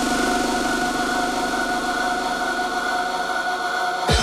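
Hard electronic dance music in a breakdown, the kick and bass filtered out, leaving a steady, buzzing, distorted synth drone that pulses rapidly.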